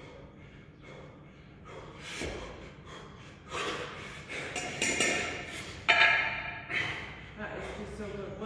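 Heavy, forceful breathing of a man out of breath partway through a ten-minute double-kettlebell long-cycle set, holding the bells in the rack. The breaths are soft and regular at first, then become loud, harsh blasts from about two seconds in, the sharpest about six seconds in.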